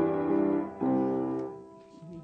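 Piano holding a chord, then striking one last chord about a second in that fades away: the close of a song's accompaniment.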